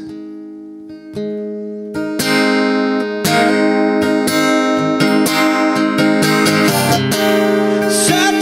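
Acoustic guitar playing an instrumental break. A chord rings out and fades, a single strum follows about a second in, and about two seconds in louder, steady strumming begins.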